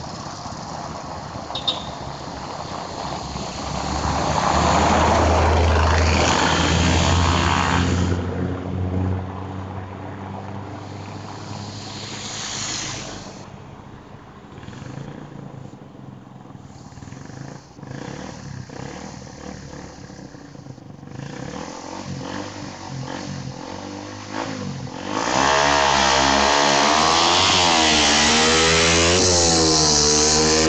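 Suzuki Satria FU single-cylinder four-stroke, bored out to 155cc and fitted with a Three L aftermarket muffler, making high-speed passes. It is very loud about five seconds in. From about 25 s to the end it is loud again, revving hard with the exhaust note rising and falling over and over.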